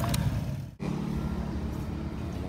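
Low, steady rumble of a motor vehicle's engine, which breaks off sharply just under a second in and comes back as a steadier low hum.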